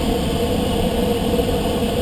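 Steady rush of air over a glider's canopy in flight, with a faint steady hum running underneath.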